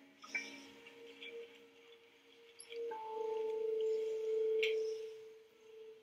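A steady, pure electronic tone held at one pitch. It swells louder in the middle, where a second, higher tone sounds over it for about two seconds.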